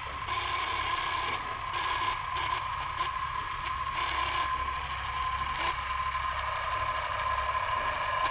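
Film projector running, a steady mechanical clatter with a constant whine.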